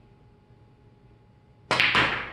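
A pool shot near the end: two sharp clicks a fraction of a second apart as the cue tip strikes the cue ball low for a draw shot and the cue ball hits the object ball, followed by a fading clatter as the object ball drops into the corner pocket.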